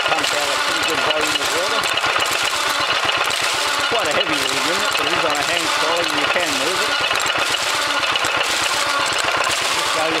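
Buzacott 2 HP stationary engine running steadily at about 450 RPM, driving an Ajax sludge pump through cast-iron gearing, with a fast, even clatter. Water splashes out of the pump outlet.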